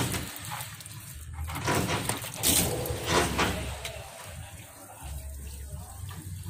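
Water draining out of a solar water heater tank, with irregular knocks and clatter as the pipe fittings and check valve at its outlet are handled.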